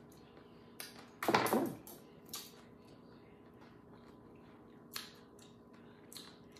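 Knife cutting through baked slider rolls on a plastic cutting board: a few short clicks and scrapes, the loudest and longest about a second and a half in, over a faint steady hum.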